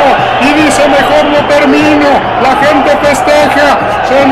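A man talking continuously in sports-commentary fashion, with steady crowd noise behind him.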